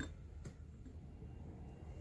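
Quiet room tone with two faint clicks about half a second apart: hard cast-resin pieces being handled.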